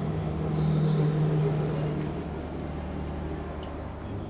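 A steady low mechanical hum, with a noisy wash over it, a little louder in the first two seconds.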